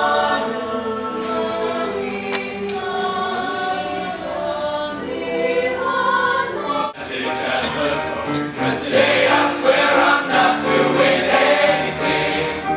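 School mixed choir singing held chords, then an abrupt cut about seven seconds in to a boys' choir singing more loudly.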